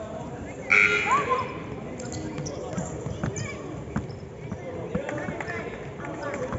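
Sounds of a youth basketball game on a court: a loud, short, high-pitched squeal about a second in, then a basketball bouncing on the floor with scattered knocks under players' and spectators' voices.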